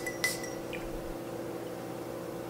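Quiet room with a steady low hum and a faint clink of a glass perfume bottle and its cap being handled near the start; no spray is heard.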